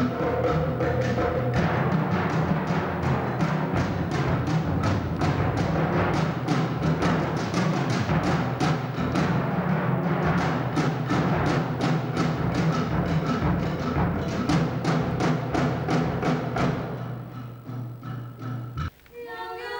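Live percussion ensemble playing drums with mallets: fast, dense strokes over a sustained low drum rumble, dying away near the end.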